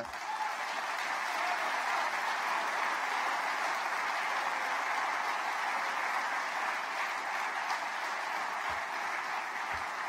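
Audience applauding, steady throughout and easing slightly over the last couple of seconds.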